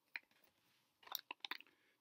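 Faint crinkling of supplement sample sachets being handled: one small click just after the start, then a quick cluster of crackles about a second in.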